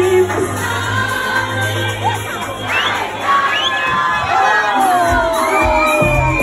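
Loud dance music from a DJ set, with a party crowd shouting, cheering and singing along. The bass drops out about two seconds in, leaving the crowd's rising shouts over the music, and the bass and beat come back near the end.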